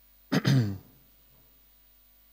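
A man clears his throat once, about a third of a second in, with a short voiced rasp that drops in pitch.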